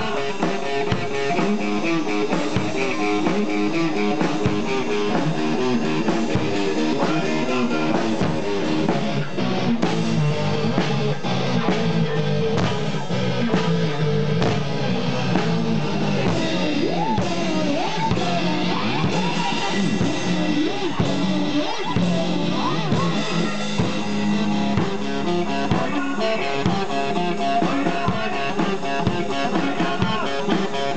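Live rock played by guitar and drum kit, the drums keeping a steady beat under the guitar. Through the middle, sliding notes bend up and down before the steady playing returns.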